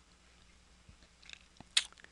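Mostly quiet room tone with a few faint, short clicks in the second half, the sharpest about three-quarters of the way through.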